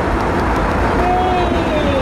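Jet airliner cabin noise at cruise: the engines and the air rushing past the fuselage make a loud, steady, even noise, heaviest in the low range. Described as noisy in here.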